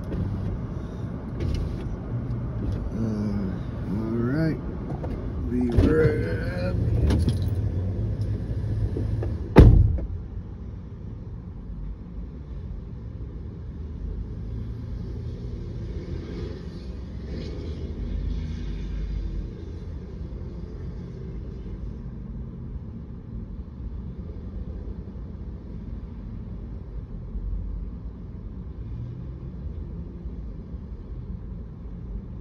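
A car door shuts with a single loud thump about ten seconds in, heard from inside the parked car. Before it there are movement and indistinct voice sounds. After it a low, steady rumble of trucks and traffic passing outside comes through the closed car.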